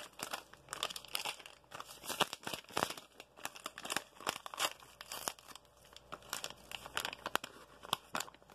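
Paper packet of Nestlé hot cocoa mix crinkling in the hand and being torn open: a dense, irregular run of crackles and rips.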